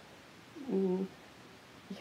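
One short hummed 'mhm' from a person's voice, about half a second long, in a pause between sentences.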